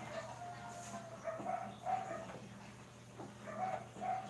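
A dog whining: a string of short, high whimpers, one of them drawn out about half a second in.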